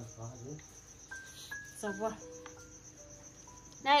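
Crickets chirping in a steady, rapidly pulsing high trill, with faint voices in the room.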